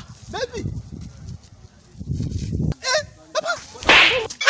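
Several short, honk-like cries that waver up and down in pitch, with a burst of low rumbling noise about two seconds in and a louder burst near the end.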